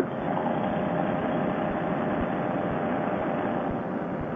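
Paramotor trike engine running steadily in cruising flight, mixed with wind noise. It is heard through a Bluetooth helmet headset microphone, which makes it narrow and muffled.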